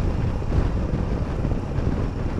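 Steady wind rushing over the microphone, mixed with the running of a Royal Enfield Himalayan's single-cylinder engine and road noise as the motorcycle rides along at steady speed.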